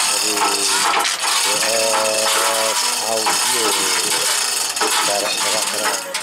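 Chains and metal rattling steadily from a chain hoist as a large speaker cabinet is lifted and guided into place, with men's voices calling out over it.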